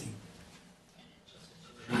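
Quiet room tone in a pause in conversation, with faint indistinct sounds about a second in; a voice starts speaking again near the end.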